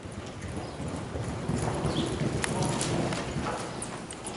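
American Quarter Horse gelding's hoofbeats loping on soft arena dirt, growing louder and peaking about halfway through, then easing as the horse goes into a sliding stop.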